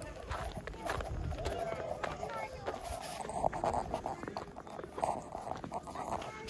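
Outdoor voices of people and children talking and calling, with footsteps crunching in snow.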